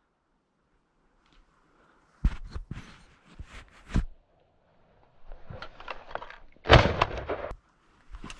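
Shotgun shots at a thrush hunt: a sharp report about two seconds in and another about four seconds in, then a louder, closer shot near the end, with some rustling just before it.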